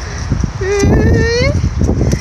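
A high, drawn-out call about a second long, rising slowly in pitch, from a woman's voice calling to a stray dog. Under it are irregular scuffing footsteps on dry, weedy ground.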